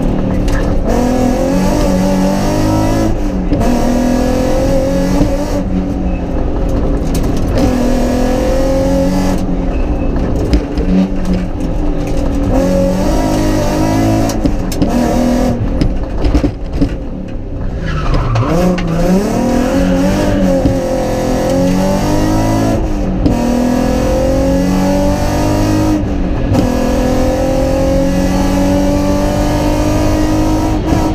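Rally car engine heard from inside the cabin, accelerating hard through the gears: the pitch climbs, drops back at each upshift and climbs again. About seventeen seconds in the engine note falls away as the car slows for a corner, then rises once more as it pulls away.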